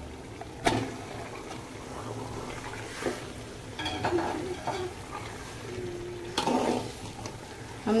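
Marinated chicken sizzling as it goes into hot oil and fried onions in an aluminium pot, with a metal spoon knocking and scraping against the pot a few times.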